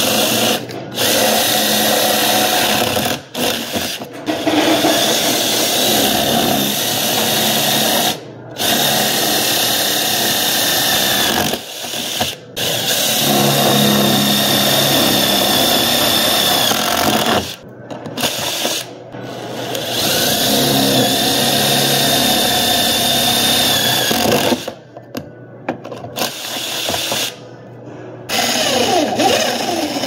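Cordless impact driver spinning a drill bit into a metal door frame to make pilot holes for tapping. It runs in several bursts of a few seconds each, with short pauses between.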